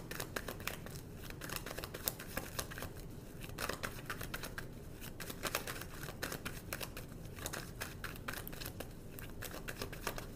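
Tarot cards being shuffled by hand: a rapid, irregular run of soft papery clicks and riffles.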